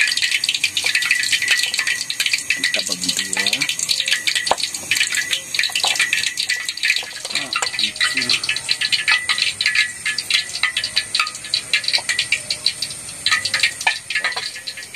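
A knife cutting through tempe and knocking on a wooden chopping board, a few knocks standing out, over a dense, irregular high crackle that runs throughout.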